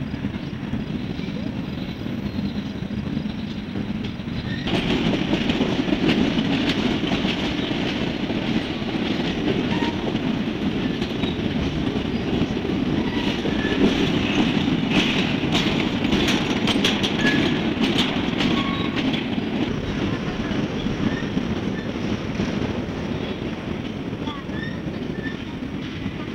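A freight train's cars rolling past on the rails, a steady heavy rumble that grows louder about five seconds in. A run of sharp wheel clicks comes over the rail joints in the middle, with a few brief wheel squeaks.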